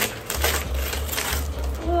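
Paper crinkling and rustling in quick irregular crackles as a child pulls a present out of a paper gift bag, with a few dull handling bumps.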